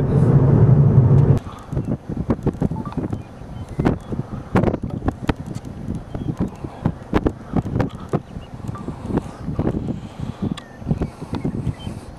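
Steady road noise inside a moving car, cutting off abruptly about a second and a half in; then wind buffeting the microphone in irregular gusts.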